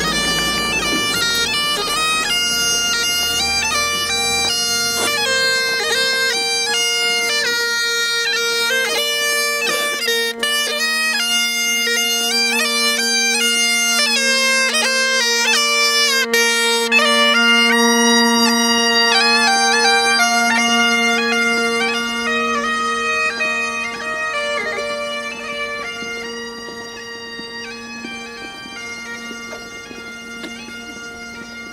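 Bagpipes playing a tune over steady drones, growing quieter over the last several seconds.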